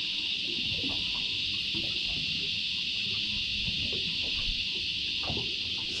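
Steady, high-pitched chorus of insects buzzing without a break, with a low uneven rumble underneath.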